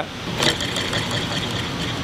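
Wooden rotating card-holder accessory spun by hand on its swivel hardware, a steady mechanical whir with a click about half a second in.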